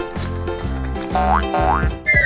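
Light comedic background music with a regular bass pattern, joined by a rising cartoon-style glide sound effect from about a second in.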